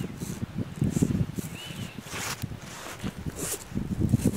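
Close handling noise: rustling and light scraping as nylon string is drawn through a notch in the rotten end of a dead stick, testing that it slides freely without binding. One brief faint squeak comes about halfway through.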